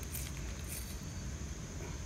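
Faint light clicks of wet creek stones and glass shards shifting under a hand, a couple of times, over a steady low background hiss.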